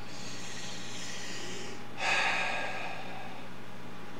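A man breathing: a long breath drawn in for about two seconds, then a louder breath let out that fades over about a second, like a sigh while stretching back.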